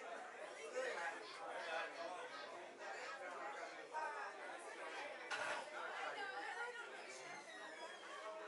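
Indistinct background chatter: several people talking at once, no words clear.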